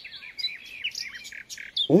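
Small birds chirping in a quick run of short chirps that slide up and down in pitch.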